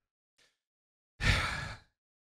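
A man's audible breath into a close microphone, about two-thirds of a second long, coming a little over a second in after dead silence.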